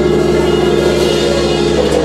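Live gospel band playing without vocals: sustained keyboard chords held over a steady bass and drum kit.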